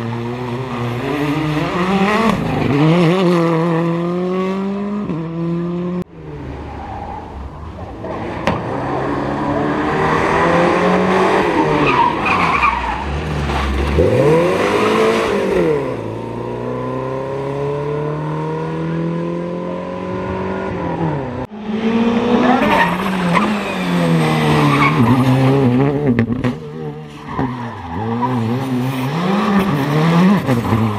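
Rally cars driven flat out one after another: a Hyundai i20 rally car, an old Volvo 240 and a Škoda Fabia rally car, engines revving hard and rising and falling through gear changes, with one car sweeping close past partway through. The sound breaks abruptly twice as the shots change.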